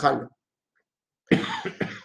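A short cough in two or three quick bursts, starting a little over a second in, after a spoken word ends and a brief pause.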